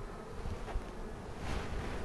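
Steady buzzing of many European honeybees crawling and flying around a comb frame held up out of an open hive.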